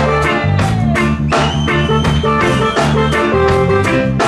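Live reggae band playing: a bass guitar line and drum kit keep a steady beat under keyboards.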